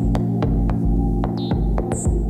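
Electronic music from a modular synthesizer: a low sustained chord that shifts twice, under pulsing deep bass, with sharp clicks and a high chirp in a repeating pattern.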